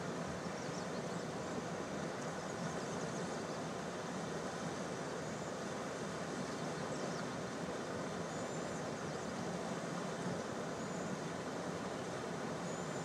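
Steady rushing of river water, an even roar with no breaks. A few faint high chirps come through in the second half.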